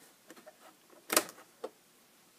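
A few faint ticks and then a sharp click about a second in, followed by a smaller click, from a hand handling the front panel of a Moog Multimoog synthesizer.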